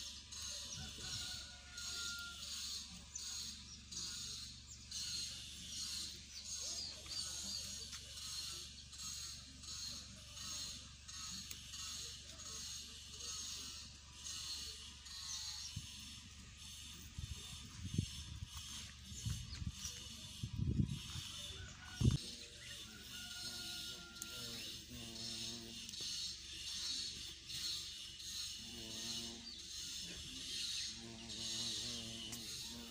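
A steady, high-pitched insect chorus, pulsing in an even rhythm of a few beats a second. A few low thumps come about two-thirds of the way through.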